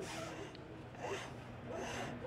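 A hand tool scraping at a workpiece in short, repeated strokes, about one a second.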